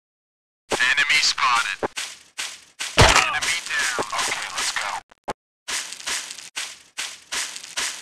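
A man's voice saying "Got it. Enemy down. Okay, let's go," in the style of video-game voice lines, followed by a run of short, rhythmic vocal "uh" and "ah" sounds.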